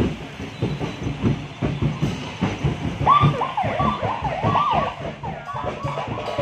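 A police siren wailing up and down in quick repeated sweeps, starting about three seconds in, over fast, steady drumbeats.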